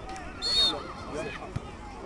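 A short, sharp blast of a referee's whistle about half a second in, over distant shouting from players and spectators.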